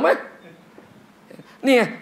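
Speech only: a man's word at the start, a pause of about a second, then a loud word with a sharply rising pitch near the end.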